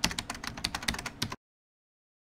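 Typing sound effect: a quick run of key clicks, as the on-screen text is typed out, that stops abruptly about a second and a half in and gives way to silence.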